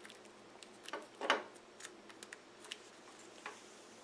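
Faint small clicks and taps of a micro-USB cable plug being handled and pushed into a smartphone's charging port, the loudest pair a little after a second in.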